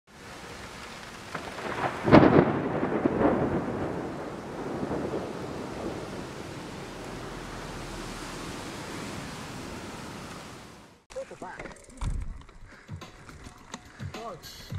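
Rain hissing steadily, with a loud thunderclap about two seconds in that rumbles on and slowly fades. It cuts off suddenly about three seconds before the end, followed by a brief spoken word and mountain-bike trail noise.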